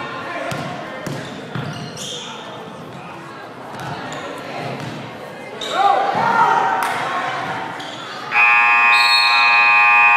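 A basketball bouncing on a hardwood gym floor amid players' and spectators' voices, then about eight seconds in the scoreboard horn sounds a loud, steady tone: the buzzer ending the quarter.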